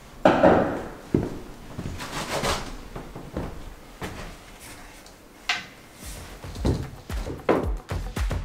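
A few scattered knocks and thunks, with music with a beat coming in near the end.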